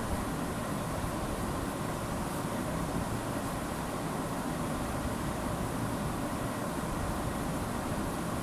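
Steady background noise: a constant hiss with a low rumble underneath, even throughout, with no distinct knocks or tones.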